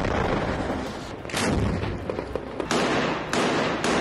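Gunfire in urban combat: about four loud, sharp reports roughly a second apart, each trailing off in an echo.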